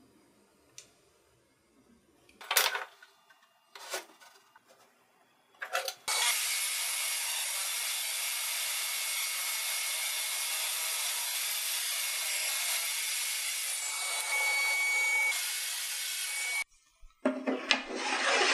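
A few short handling knocks, then a DeWALT table saw runs steadily for about ten seconds as it rips a walnut board into a thin runner; the sound stops abruptly. Near the end, the wooden strip slides and rubs in the saw's miter slot as it is fitted.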